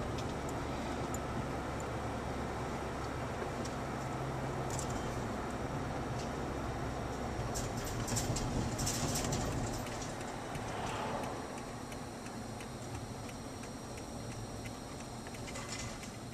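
Road and engine noise inside a moving car's cabin: a steady low hum over a wash of tyre noise, with a few light clicks around eight to ten seconds in. It eases a little about ten seconds in.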